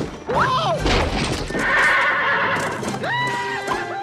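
Film soundtrack music mixed with sound effects, with a high, wavering cry that bends up and down about half a second in and again about three seconds in.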